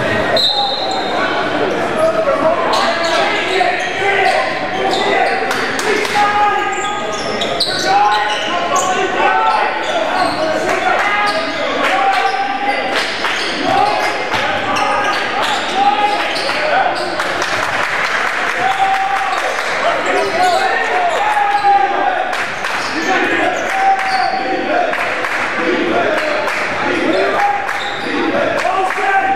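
A basketball bouncing and being dribbled on a hardwood gym floor, many short knocks through the whole stretch, with shouts and chatter from players, benches and spectators echoing in the large gymnasium.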